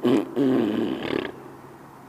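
A man's loud wordless vocal shouts, a short one at the start and then a longer one held for about a second, echoing off the underside of a bridge.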